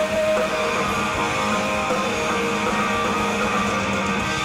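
Live alternative rock band playing an instrumental passage on electric guitars and bass guitar, loud and steady. A long held note ends within the first second.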